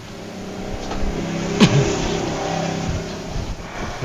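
A motor vehicle's engine running as it passes, its sound building over the first second and a half, holding, then easing toward the end. There is one sharp click about one and a half seconds in.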